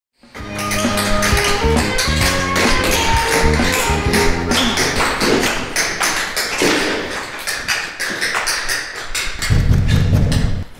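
Tap shoes clicking in quick rhythmic patterns over music with a bass line. Loud knocks on a door come in near the end.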